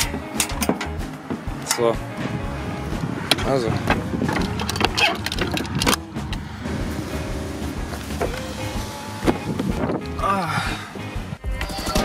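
Metal clicks and rattles of a tie-down strap's hook and buckle against a perforated aluminium trailer ramp, then the trailer door's locking bar being worked, with a single loud clunk about six seconds in.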